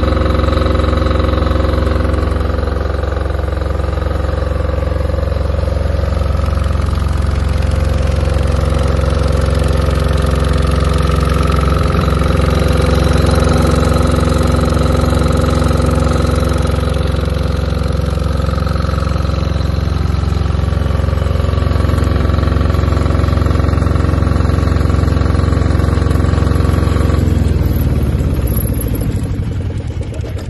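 Yanmar YDG600VST-5E soundproofed diesel generator running steadily, driven by its single-cylinder Yanmar L100V air-cooled diesel engine. Near the end the steady running note breaks off and the level drops, giving way to a looser clatter.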